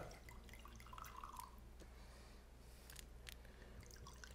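Red wine pouring faintly from a bottle into a wine glass, with a couple of small clicks about three seconds in.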